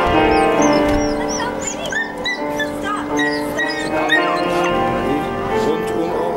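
A dog whimpering in a flurry of short, high squeaks, excited as it jumps up at a person, over background music with long held notes.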